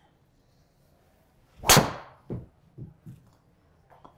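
A single sharp crack of a Cobra Darkspeed X driver striking a golf ball off the tee, about halfway through, with a short ring-out.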